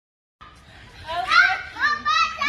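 Silence, then from about half a second in a faint background hiss, and from about a second in high-pitched voices of children and adults calling out and talking during outdoor play.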